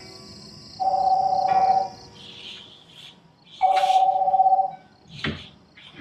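Video-call ringtone ringing twice on a laptop, each ring a trilling two-note tone about a second long. A short sharp knock comes about five seconds in.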